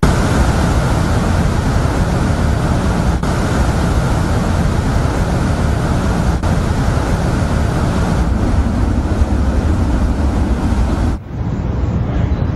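Loud, steady rushing noise with a deep rumble underneath, starting abruptly and cutting off suddenly about eleven seconds in.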